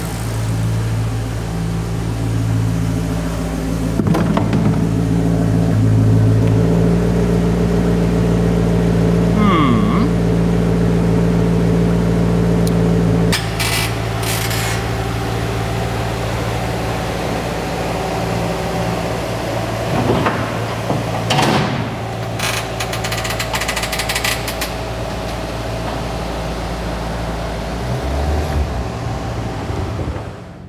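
Maserati Quattroporte's 4.2 V8 idling steadily just after an oil change, with the oil warning light out and the engine sounding good. About halfway through, the sound cuts to a different steady hum with scattered clicks and knocks.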